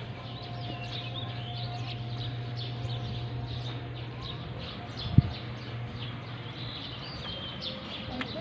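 Small birds chirping over and over above a steady low hum, with one sharp thump about five seconds in.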